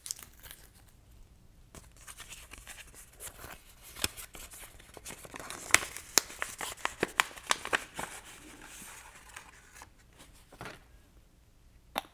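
Small paper envelope being torn and peeled open by hand, with a quick run of sharp paper crackles in the middle seconds and a quieter stretch near the end.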